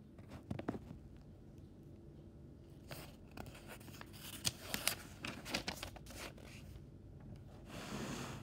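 Paper book pages being handled and turned: faint, scattered crackles and rustles of paper, busier near the end as a page is flipped over.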